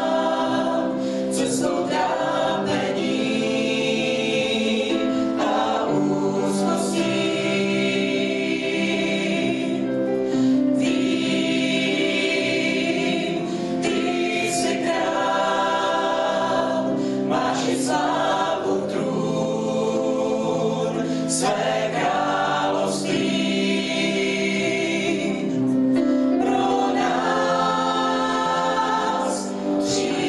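Mixed choir of men's and women's voices singing a Czech worship song, holding long notes with short sibilant consonants between phrases.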